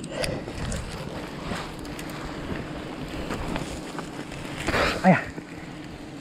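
Steady low hum of a swarm of giant honeybees (Apis dorsata) flying off a nest that is being smoked, the colony releasing its bees. Scraping and rustling of the camera against tree bark runs underneath.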